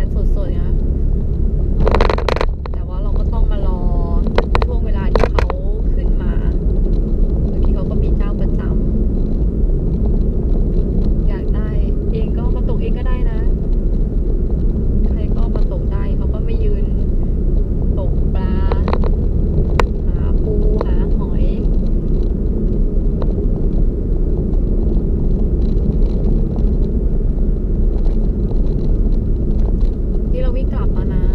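Steady road and engine rumble heard from inside a moving car's cabin, with faint, intermittent voices over it.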